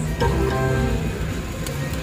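IGT video slot machine playing its electronic game sounds: musical tones as the reels stop and a short line win pays, over a steady low hum.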